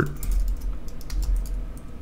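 Typing on a computer keyboard: a quick, irregular run of key clicks over a faint low hum.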